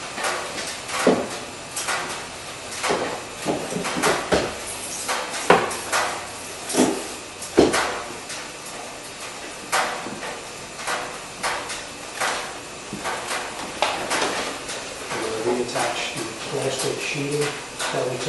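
Irregular clicks and knocks of hand work on a bare pickup-truck door, as a removed part is fitted and bolted back on, with a few sharper knocks in the middle.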